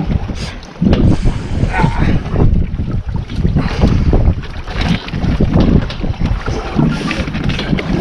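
Wind buffeting the microphone on an open boat at sea: a loud, gusting rumble.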